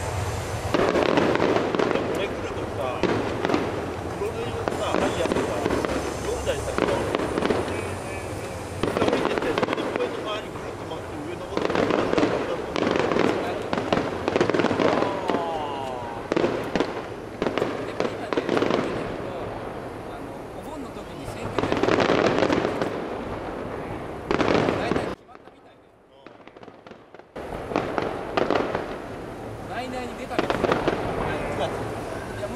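Aerial firework shells bursting one after another, a dense run of bangs and crackle with loud swells every few seconds. About 25 seconds in, the sound drops out suddenly for about two seconds, then the bursts resume.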